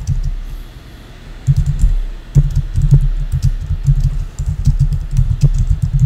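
Typing on a computer keyboard: quick runs of keystrokes as a sentence is typed, with a lull of about a second near the start.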